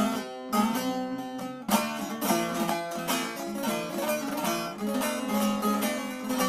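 Saz, a Turkish long-necked lute, played solo without singing: rapid plucked and strummed notes, with strong struck accents right at the start and again a little under two seconds in.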